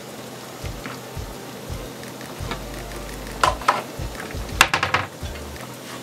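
Steady hissing of a stainless steel pot of hot pepper soup broth heating on a gas hob, with a few short knocks and clinks about halfway through.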